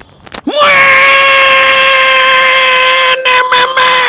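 A man yelling a long drawn-out "Moi!" held on one high pitch for about three and a half seconds, sinking slightly and fading at the end, with a few short clicks under it near the end.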